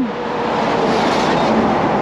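A tractor-trailer passing close by at highway speed: a loud, even rush of tyre and wind noise that peaks about a second in.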